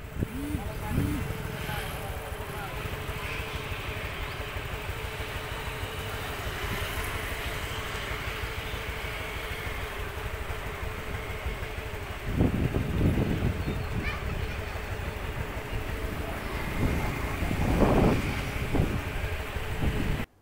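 Roadside outdoor background noise: a steady low rumble with a faint hum over it. Louder swells rise about twelve seconds in and again near the end, like traffic going by.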